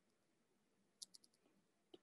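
Faint stylus taps on a tablet's glass screen during handwriting: a quick run of about four ticks about a second in, then one more near the end.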